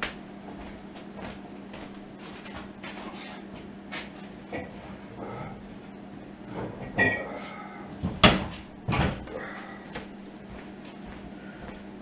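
Scattered knocks and clunks of a cupboard or door and of things being handled, with the sharpest knocks about seven to nine seconds in, over a steady low hum.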